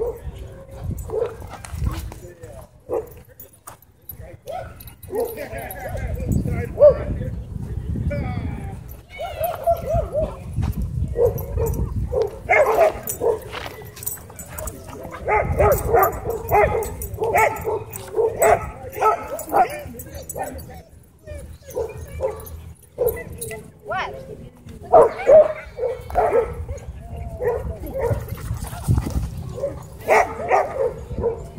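Dogs barking and yipping in short repeated calls, thickest in the middle and again near the end, over a low rumble on the microphone.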